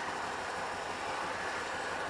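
Steady background hiss and low rumble with no distinct events.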